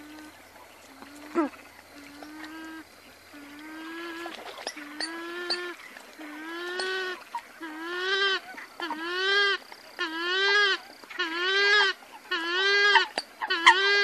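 Purple swamphen calling: a steady series of pitched calls, each rising then falling, about one a second, starting faint and growing louder. A single sharp click sounds just over a second in.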